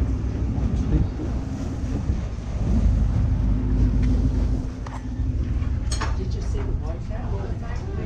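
Steady low drone of a paddle boat's engine, with one sharp click about six seconds in.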